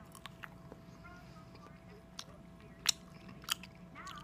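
Biting and chewing a red Twizzler licorice twist: a string of short, sharp clicks, about half a dozen, the loudest about three seconds in.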